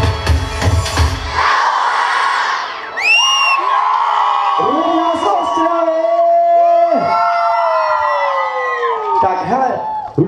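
Dance-pop song with a heavy beat that cuts off about a second and a half in. Then a large crowd of children cheers and shouts, with a quick rising whoop and then long drawn-out calls that slide down in pitch.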